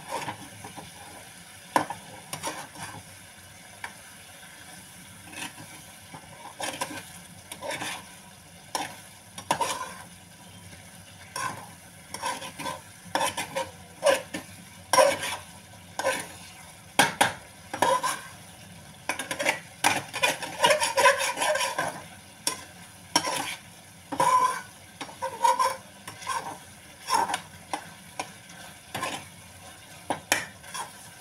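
A spoon stirring soybean curry in a kadhai, scraping and clinking against the pan in irregular strokes, busiest about two-thirds of the way through, over a faint steady sizzle of the curry cooking.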